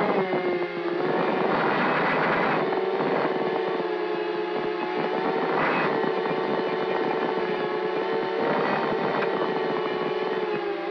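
Mini FPV racing quadcopter's four Emax RS2205 brushless motors and propellers whining steadily at a hover-like throttle, the pitch wavering slightly, with a few brief louder rushes as the throttle is punched.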